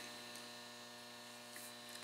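Steady, quiet electrical hum with no other sound of note: room tone in a pause between words.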